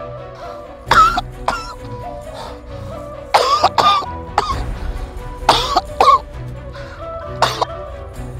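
A man coughing and groaning in short, hoarse bursts, about five times, over steady background music.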